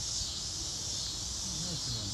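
Steady high-pitched chorus of insects in summer woodland, unbroken, over a low rumble; a faint voice murmurs in the second half.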